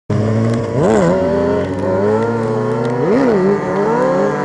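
Motorcycle engine idling steadily, with two brief blips of the throttle that raise the revs and let them fall back, about a second in and again about three seconds in.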